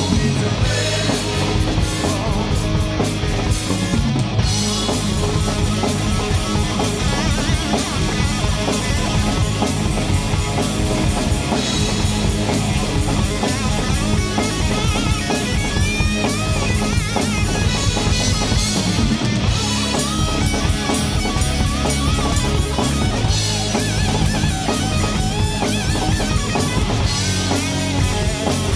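Southern rock band playing live: drum kit, electric guitars and bass together at full volume.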